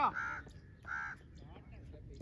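Two short, harsh crow caws about three-quarters of a second apart.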